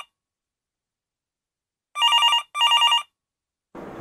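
Mobile phone ringing with an incoming call in the classic double-ring telephone pattern: one ring-ring about two seconds in, after a stretch of complete silence.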